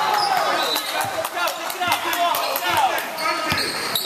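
Basketball bouncing on a hardwood gym floor several times, with voices in the hall.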